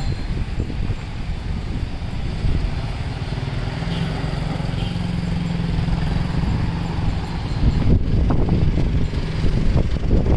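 Road traffic with a motorcycle engine running close by, holding a steady hum through the middle of the stretch.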